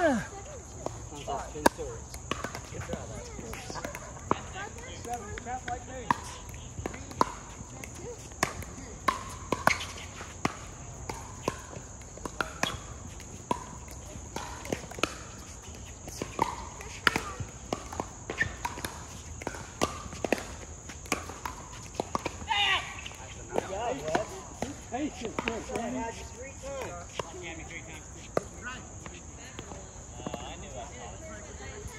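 Pickleball paddles hitting a hard plastic ball, sharp pops one to two seconds apart, as rallies run on this court and the neighbouring ones. Under them a steady high insect buzz and scattered voices.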